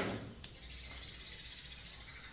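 Crisp snaps of green beans being broken by hand, twice in the first half second, then a steady high hiss that runs on through the rest.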